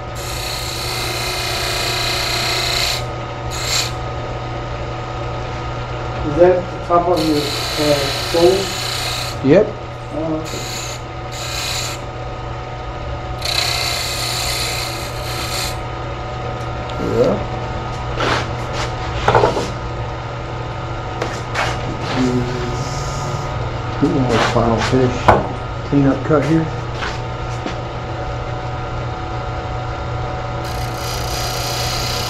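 Small wood lathe running steadily, with a hand turning tool cutting into the spinning wood in three bursts of hissing scraping, at the start, about 8 seconds in and about 14 seconds in.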